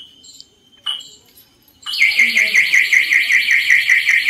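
Mahindra Scorpio S10's anti-theft alarm, set off by a door being opened from inside while the car is locked: short high beeps about once a second, then about two seconds in a loud, rapidly pulsing siren.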